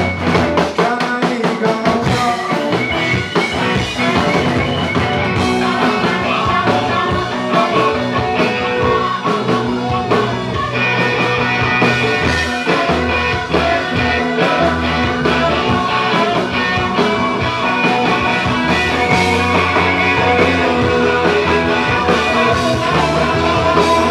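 Live rock band playing: electric guitars over upright double bass and drums, loud and continuous, with a steady drum beat.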